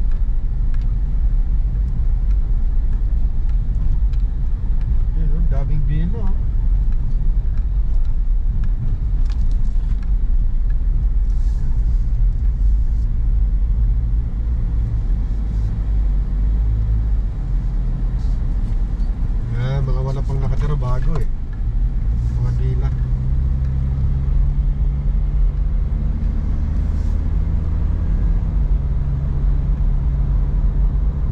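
Car cabin noise while driving: a steady low rumble of engine and tyres on the road. In the last third the engine hum becomes steadier and rises a little in pitch.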